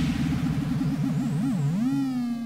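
Background-score sound effect: a low synthesizer tone wobbling up and down in pitch, slowing near the end into a rising glide that settles on a held note.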